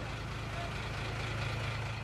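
A vehicle engine idling, a steady low hum under an even background hiss.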